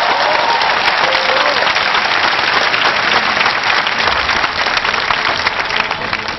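A large audience applauding steadily, a dense wash of many hands clapping, easing off slightly near the end.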